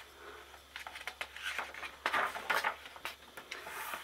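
A paper page of a hardcover picture book being turned by hand: a few soft rustles and brushes of paper.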